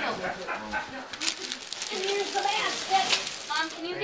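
Tissue paper and gift wrapping rustling and crinkling as a present is unwrapped, with quiet voices talking underneath.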